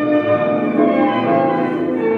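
Recorded instrumental tango music playing at a steady level: an orchestra of strings and piano in sustained, shifting chords.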